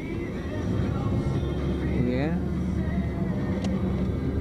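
Steady low rumble of a car's engine and road noise, heard from inside the moving car, growing a little louder after the first half-second.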